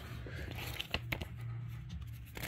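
Soft rustling of trading cards and clear plastic card sleeves being handled, with a few light clicks about a second in, over a low steady hum.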